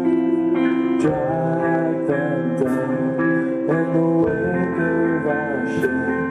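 Live rock band playing an instrumental passage: electric guitars hold sustained chords while a lead line bends notes up and down, with occasional cymbal strikes.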